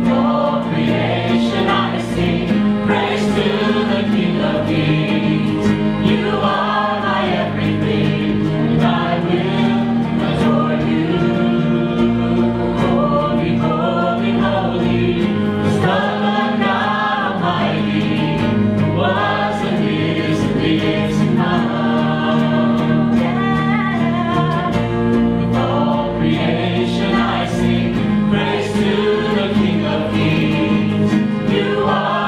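Live worship song from a small band with guitars, with steady held chords under sung melody; the singing sounds like several voices together.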